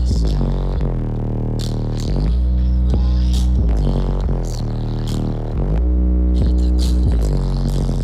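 Bass-heavy rap music played loud through four DS18 EXL 15-inch subwoofers in a Q-Bomb box. Long, deep bass notes change pitch every second or two under a quick hi-hat beat.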